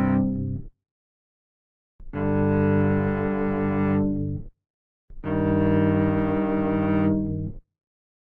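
Demonstration dyads in a string-like timbre: a whole string sounded together with a shorter part divided in a whole-number ratio, such as 2:3, giving consonant intervals. A held chord ends about half a second in. Two more follow, each lasting about two and a half seconds with short silences between, and another begins right at the end.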